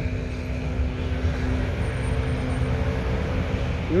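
City street traffic: a motor vehicle's engine hum with a few steady tones, fading out about halfway through, over a low traffic rumble.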